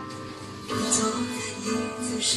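Music: a song's instrumental introduction on guitar, with plucked notes coming in louder under a second in.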